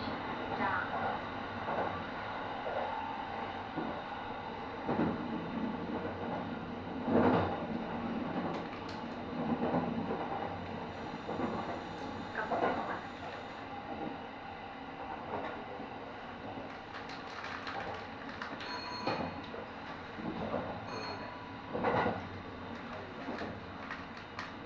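Kintetsu 23000-series Ise-Shima Liner electric train running along the line, heard from just behind the driver's cab: steady running noise of wheels on rails and motors that swells briefly now and then.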